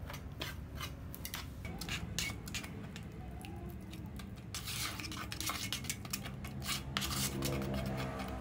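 Small metal trowel stirring and scraping wet cement mortar in a plastic tub: a run of quick clicks and scrapes, thickening into denser scraping from about halfway through to near the end.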